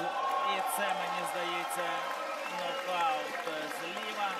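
A boxing arena crowd shouting and cheering at a knockdown, with a man's voice calling out over the noise.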